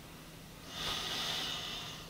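A person's long breath, a soft hiss through the nose that swells in about half a second in and fades out over a little more than a second.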